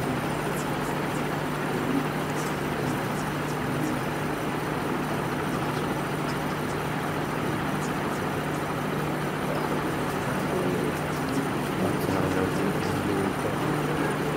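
Steady background room noise: a constant low hum under an even hiss, with a few faint clicks.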